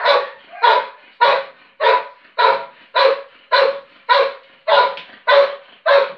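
A dog barking in a steady run of short, loud barks, about two a second, while sitting and facing up at a padded bite sleeve in protection training.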